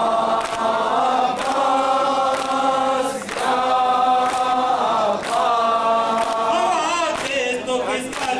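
A group of men chanting an Urdu noha in unison, holding long notes, with rhythmic matam chest-beating striking about once a second.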